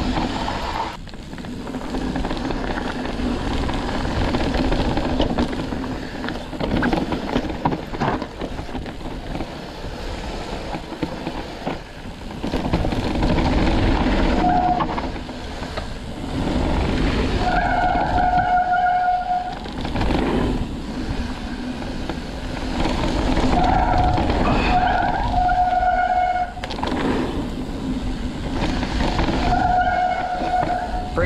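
Ibis Ripmo AF mountain bike rolling fast down a dirt singletrack, its tyres and frame giving a continuous rattling rumble. From about halfway through, brief steady high-pitched squeals come several times, the longest lasting about two seconds, typical of the disc brakes squealing under braking.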